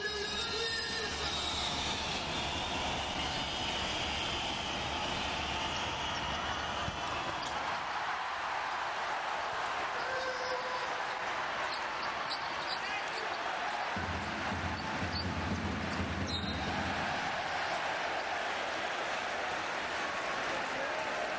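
Steady crowd noise in a basketball arena during a live professional game, with a basketball being dribbled on the court. A low rumble rises under the crowd for a few seconds about two-thirds of the way through.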